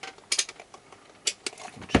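Digital multimeter being handled and set down on a rubber bench mat: a few separate sharp clicks, then a louder knock at the end as it is put down.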